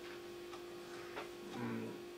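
A pause in a talk: quiet room tone with a steady electrical hum, a faint tick about a second in, and a short low vocal hesitation sound near the end.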